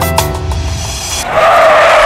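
Children's song music with a steady beat, then about 1.3 s in a loud cartoon sound effect of car tyres screeching.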